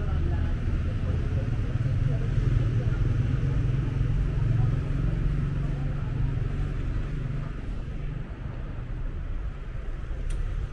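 Street traffic: a low engine rumble from motor vehicles on the road, strongest in the first half and easing off near the end.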